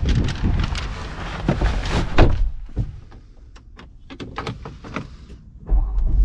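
A person climbing into an Ineos Grenadier's driver's seat: a run of clicks, knocks and rustling, with a car door shutting, loudest about two seconds in. A deep low rumble comes in near the end.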